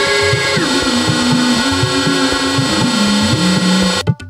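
Computer-generated improvised electronic music: dense layers of sustained synthetic tones that slide down in pitch, the highest within the first second and the lowest in steps towards the end, over a rapid low pulsing.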